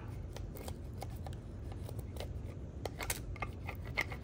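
Fingers rubbing and pressing vinyl transfer tape down onto a 3D-printed plastic cup: a run of small scratchy crackles and ticks over a steady low hum.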